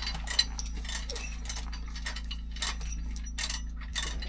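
Steel chain links clinking and rattling in short, irregular clicks as the chain is handled around a concrete block, over a steady low hum.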